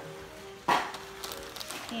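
A cardboard cereal box tossed onto the floor, landing with a single sharp thud under a second in. Soft background music with held notes plays throughout.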